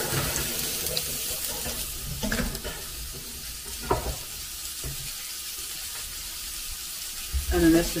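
Chopped vegetables sizzling steadily in oil and butter in a hot frying pan, with a few knocks early on from the pan and utensil.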